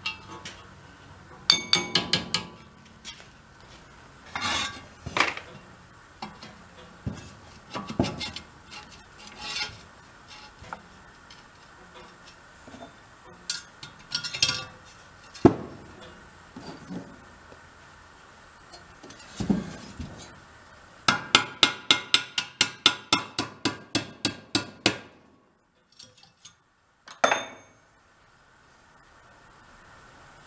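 Hammer tapping on steel: scattered single strikes, then a quick run of about four blows a second for some four seconds, as pins are driven into a snow blower's auger shaft.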